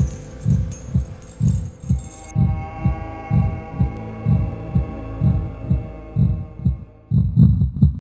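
Heartbeat sound effect: low, regular thumps about two a second over a steady droning chord. The chord's higher tones drop out about two seconds in, and the last thumps are louder.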